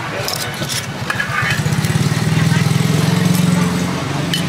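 A small vehicle engine running close by, growing louder through the middle and easing off near the end. Metal tongs click against a spatula in the first second.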